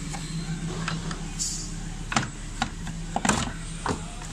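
A few sharp clicks and knocks of hand work on a Jeep Wrangler's ABS module and its mounting hardware, over a steady low hum, with a short hiss about a second and a half in.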